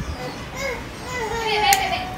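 Children's voices calling and playing in the background, with a sharp click near the end.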